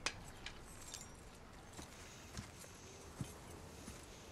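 Faint, scattered light clicks and clinks, about half a dozen over a few seconds, in an otherwise hushed film scene.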